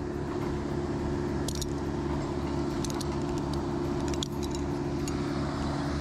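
Metal climbing hardware on an arborist's harness and lanyard (carabiners and fittings) clinking a few times as the lanyard is adjusted, about one and a half seconds in and again around three to four seconds. A steady engine drone runs underneath.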